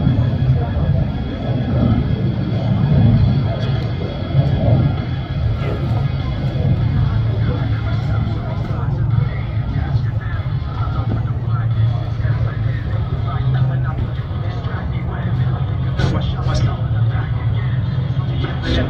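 Steady rumble of a distant F-35A Lightning II's single Pratt & Whitney F135 turbofan as the jet makes a pass, mixed with public-address music and crowd voices.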